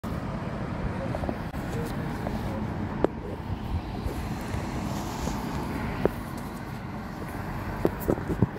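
Steady outdoor street noise: a low rumble of wind on a phone microphone and road traffic, with two sharp knocks, about three and six seconds in, typical of the phone being handled.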